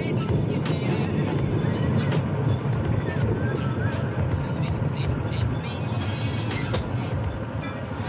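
Bamboo train (norry) rolling on steel rails: a steady low rumble from its small engine and wheels, with scattered sharp clacks from the wheels over the track.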